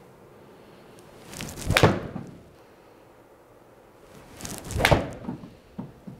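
Golf iron swung in an indoor simulator bay: two swishing swells, each ending in a thud, about three seconds apart. The second is the shot, the club striking the ball off the hitting mat into the screen.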